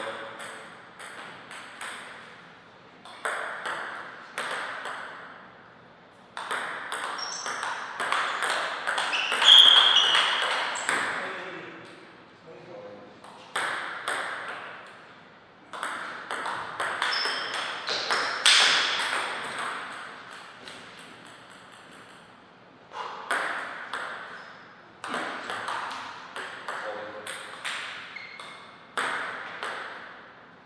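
Table tennis rallies: the ball clicks back and forth off the bats and the table in quick exchanges. There are several rallies, with short pauses between them.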